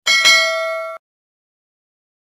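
Bell-ring sound effect of a subscribe-button animation as the cursor clicks the notification bell: a bright ding with a second strike about a quarter second in, ringing for about a second and then cutting off abruptly.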